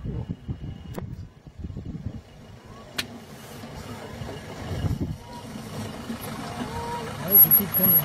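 Vehicle engine idling, a steady low sound, with a single click about three seconds in; low voices begin murmuring near the end.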